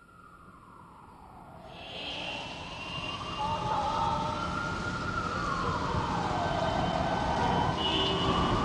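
A siren wailing slowly, falling in pitch over several seconds and then rising again, over a rumbling noise that swells up from quiet.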